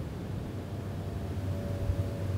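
Low, steady rumble of beach ambience with the surf, with a faint steady hum coming in about half a second in.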